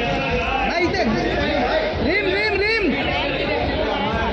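Paparazzi photographers calling out over one another in raised voices, a busy chatter of several people.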